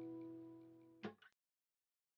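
Acoustic guitar chord ringing out and slowly fading. About a second in, a short knock cuts it off, and then there is dead silence.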